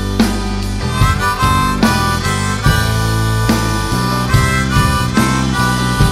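Amplified harmonica playing a bending lead line through a vocal microphone over a live rock band: electric guitars, bass and a steady drum beat.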